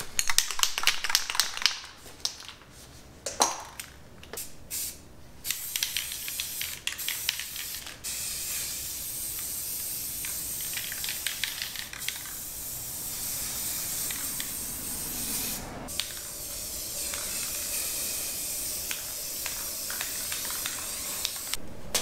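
Aerosol can of Rust-Oleum Painter's Touch Ultra Cover flat black spray paint. It rattles in short bursts of clicks as it is shaken, then from about eight seconds in it sprays in long, steady hissing passes broken by a few short pauses.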